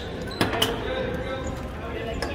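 A basketball bouncing on a gym's hardwood floor, two sharp bounces about half a second in, with spectators talking in the background.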